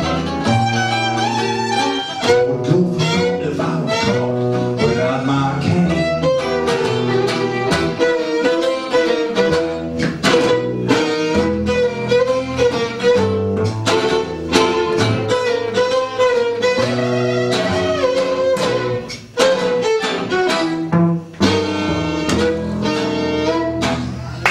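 Live acoustic ensemble playing a tango: a sustained melody line over plucked guitar chords and a walking bass line.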